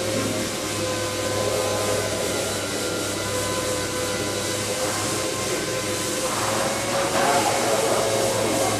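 Steady room din and hum of a large cathedral interior, with a brief indistinct voice near the end.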